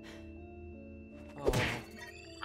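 Sustained soundtrack music with one sharp impact thunk about one and a half seconds in: a hit to the face in the cartoon's sound effects. A short exclaimed "oh" comes with the hit.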